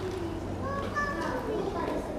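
Faint background chatter of high-pitched voices, like children talking.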